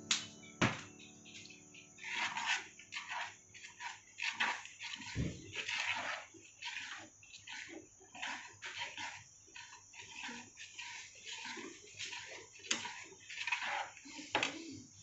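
Metal spoon stirring thick pumpkin soup in a pan, making irregular wet sloshing and scraping sounds. Two sharp knocks come right at the start.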